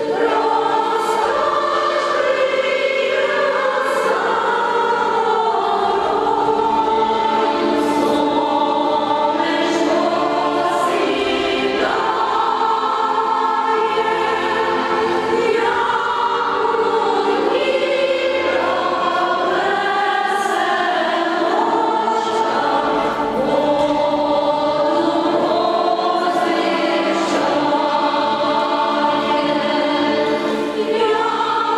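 A women's choir singing a song in several-part harmony, unaccompanied, with long held notes.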